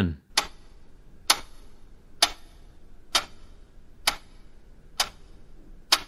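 Clock-like ticking: seven sharp, evenly spaced ticks, one a little under every second, over a faint low hum.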